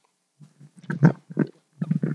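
A man's short throaty vocal noises close to a microphone, not words: a few quick bursts starting about half a second in, the strongest about a second in.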